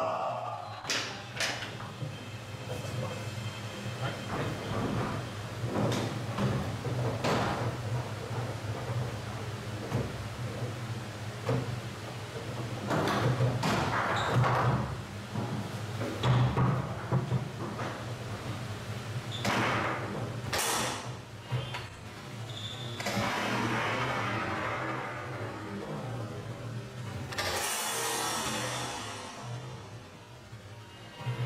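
Foosball play on a table-soccer table: scattered sharp knocks and cracks as the ball is struck by the rod men and bangs off the table walls and goal. Background music and a steady low hum run underneath.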